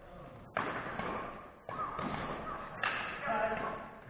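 Three sharp badminton racket strikes on a shuttlecock, a little over a second apart in a rally, each followed by a reverberant tail in a large gym hall.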